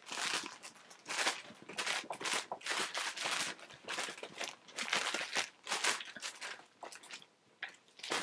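Clear plastic bag crinkling in quick, irregular crackles as the plush toy inside it is shaken and waved about.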